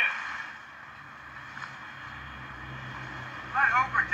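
A boat engine's low, steady drone with sea noise, from a film soundtrack heard through small laptop speakers; a voice starts near the end.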